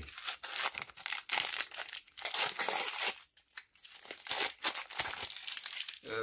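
A sealed baseball card pack's wrapper being torn open and crinkled by hand, in a run of irregular crackling bursts with a short lull a little past halfway.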